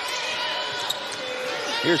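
Basketball being dribbled on a hardwood court, a few faint bounces over steady gym background noise.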